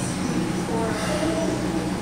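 A steady low hum with indistinct voices talking in the background.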